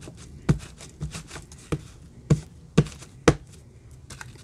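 Plastic-cased black ink pad patted repeatedly onto a rubber stamp to ink it: about six sharp taps, roughly two a second, the last ones loudest.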